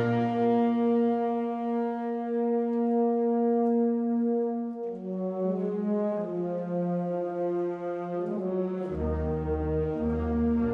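Concert wind band playing a slow, sustained passage with brass. A chord is held for about five seconds, then a moving line takes over in the middle voices, and a low bass enters about a second before the end.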